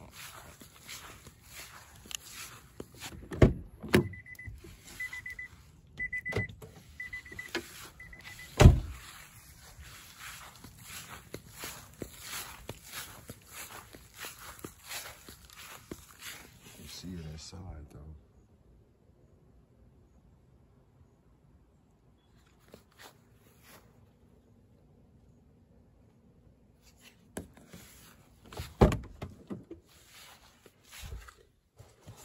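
Car door sounds: loud thumps about three and a half and four seconds in and again near nine seconds, with a high electronic beep from the car repeating about twice a second for about four seconds. Before that, footsteps on grass and rustling. The sound drops to a faint low hum a little after halfway, and another thump comes near the end.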